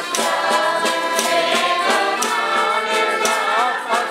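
A group of young voices sings a traditional Pasquetta folk song together, backed by accordions and a melodica. A snare drum and wooden clappers strike a steady beat about once a second.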